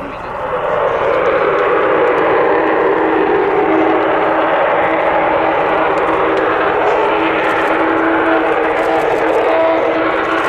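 Lockheed U-2S single General Electric F118 turbofan at take-off power as the jet rolls down the runway and lifts off. The noise swells during the first second, then holds loud and steady, with a low steady drone running through it.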